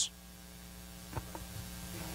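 Steady electrical mains hum with its even overtones, with two faint ticks a little past halfway.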